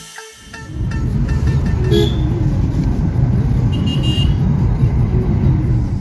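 Street traffic with a steady low rumble, and short vehicle horn toots about two and four seconds in.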